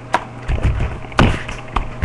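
Plastic baby bottle knocking and thumping on a tabletop as it is handled and tips over, a few separate knocks with the sharpest about midway through.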